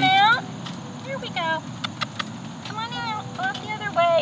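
A cat meowing several times, short drawn-out meows that rise and fall in pitch, over a low steady rumble.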